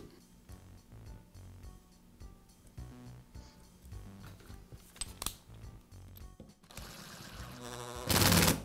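Faint background music, with small handling clicks and a soft scraping noise near the end as a screw is driven to fasten the router's ground wire.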